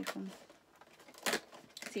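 A cardboard advent calendar door being pushed and torn open, with one short, crisp tear a little over a second in.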